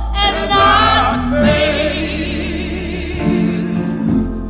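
Gospel vocal group singing long held notes in harmony, the voices wavering with vibrato.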